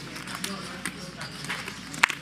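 Poker chips clicking as a player handles his stack, a few sharp clicks over quiet table chatter.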